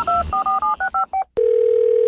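Telephone touch-tone dialing: a quick run of about ten keypad beeps in a little over a second. Then a click, and a single steady telephone line tone starts.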